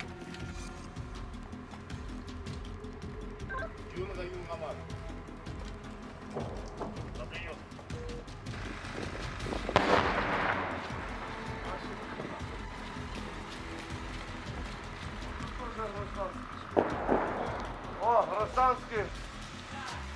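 A single loud bang of gunfire about halfway through, echoing briefly, over a steady low background. Men's voices can be heard near the end.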